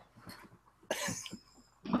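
A person's short stifled laugh, a breathy burst about a second in and another near the end.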